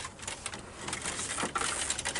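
Irregular rustling and a few light knocks from people clambering about a wooden playground structure.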